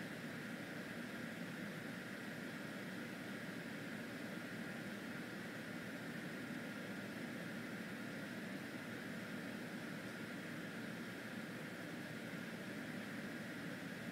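Steady, even background hum and hiss with no distinct events, like a running fan or air-conditioning unit.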